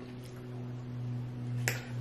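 A man's long closed-mouth "mmm" of enjoyment while eating, held at one steady low pitch, with a faint mouth click near the end.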